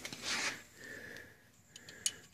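A person's short sniff close to the microphone about a quarter second in, followed by faint handling noise and a few small clicks near the end.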